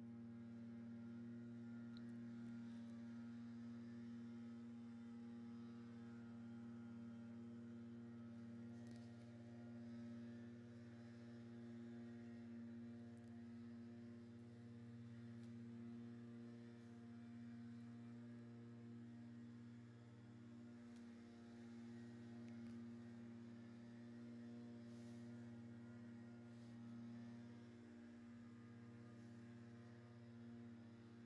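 Near silence with a faint, steady low hum throughout, and a few faint clicks.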